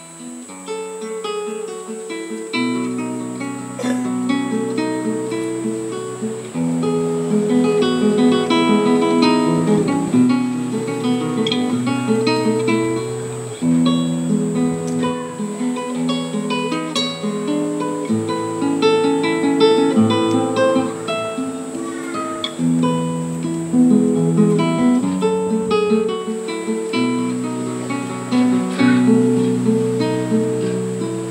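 Solo classical guitar playing a piece of plucked notes over held bass notes. It starts softly and grows louder in the first couple of seconds.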